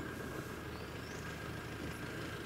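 A steady low hum like an idling engine or motor, with a faint thin steady whine above it.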